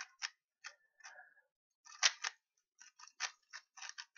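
3x3 Rubik's cube layers being turned fast by hand: a quick, irregular run of sharp plastic clacks, the loudest about two seconds in.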